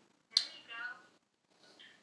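A short wordless vocal sound from a person: a sharp breathy onset, then a brief voiced note.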